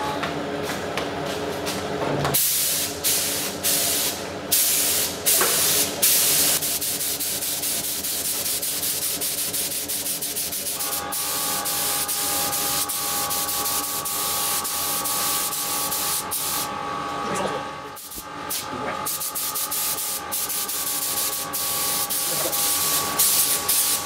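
Steady hiss of compressed air from a gravity-feed paint spray gun working over a freshly lacquered car fender, letting up briefly about two seconds in and again near 18 seconds. A steady machine hum runs underneath.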